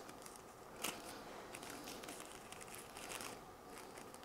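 Faint crinkling and rustling of a thin Fuji Paper end paper being handled and folded against a section of hair, with small scattered ticks, one a little louder about a second in.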